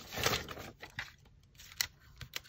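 Paper being handled and shuffled on a table: a brief rustle near the start, then a few faint light taps and clicks.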